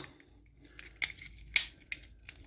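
Hard plastic parts of a Transformers Kingdom Cyclonus action figure clicking as they are handled and pressed together, the legs being snapped shut with a tab pushed into its slot. A few light clicks, the loudest about a second and a half in.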